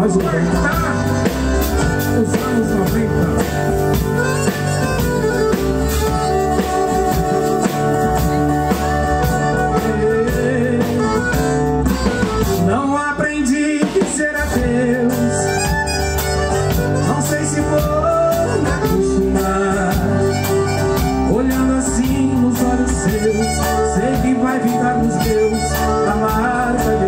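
Live forró band playing with a steady beat: piano accordion carrying the melody over acoustic guitar, electric bass and drum kit.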